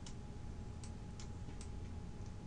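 A few faint, irregular clicks from a computer input device used to mark up the slide on screen, over a low steady hum.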